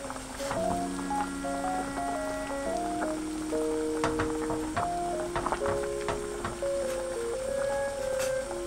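Light background music with a simple melody of held notes. Under it come a few sharp metal clicks of kitchen tongs against a stainless-steel pot as chunks of pork shank are turned in boiling broth.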